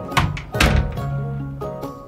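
A wooden room door being shut, a sharp knock followed by a heavier thud about half a second in, over background music.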